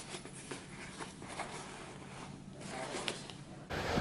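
Stiff 15-ounce waxed cotton tin cloth of a Filson field coat rustling and scraping softly as a bellows pocket flap is handled, with a light click about three seconds in.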